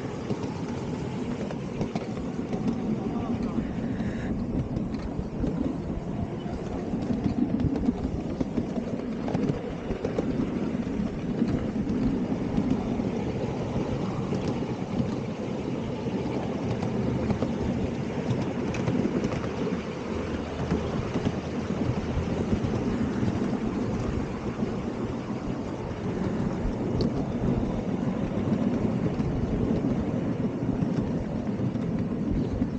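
Miniature railway train running along the track, its riding-car wheels giving a steady, dense rattle and clatter on the rails.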